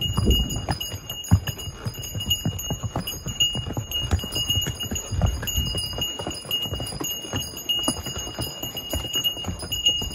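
Donkey hooves clip-clopping on a stone path in an irregular run of hoof falls, with a steady high-pitched tone under them.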